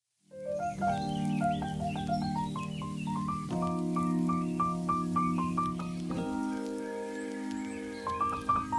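Soft instrumental background music: held chords that change twice, under a melody of short, evenly stepped notes.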